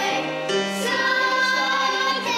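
A choir of children singing together in Manx Gaelic, holding long notes.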